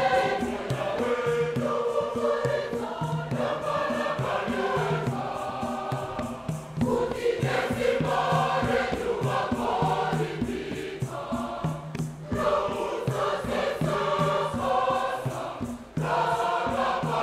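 Mixed choir of women and men singing a Shona Catholic hymn in several-part harmony over a steady rhythmic pulse.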